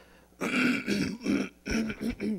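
A man clearing his throat three times in quick succession, the first the longest and loudest.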